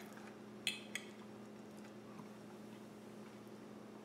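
A fork clinking twice on a plate about a second in, lifting a bite of fried egg, over a faint steady hum of room tone.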